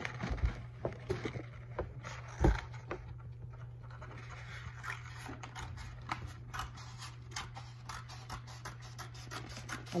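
Scissors snipping through a sheet of infusible ink transfer paper, a quick irregular run of snips and paper scratching, with a single thump about two and a half seconds in.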